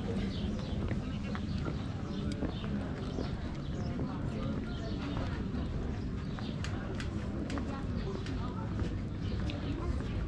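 Footsteps on stone paving, sharp irregular clicks, over a steady low rumble. Indistinct voices of people nearby run underneath.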